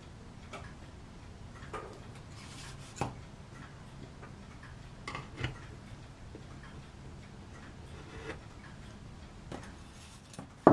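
Faint, irregular light clicks of small pliers working among the plastic fittings and wire hoops of a model ship, the sharpest about three and five seconds in, over a low steady hum.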